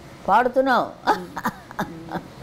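An older woman's wordless voice: one drawn-out sound rising and falling in pitch, then a few short bursts of laughter.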